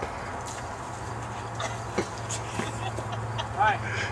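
A steady low hum with a few faint knocks, then a short vocal sound from a person near the end.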